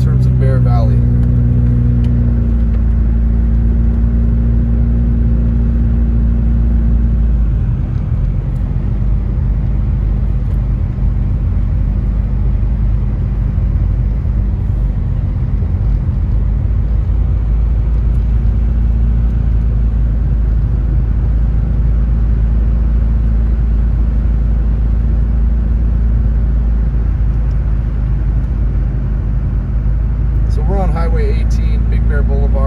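Car engine running with tyre and road noise on a snow-covered road, heard from inside the cabin. The engine's steady hum shifts about two seconds in and again about seven seconds in, then settles into a steady low rumble.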